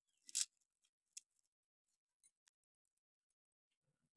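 Short, crisp cutting sounds of fresh ginger being cut by hand: one sharp stroke about half a second in, a lighter one just after a second, then a couple of faint ticks.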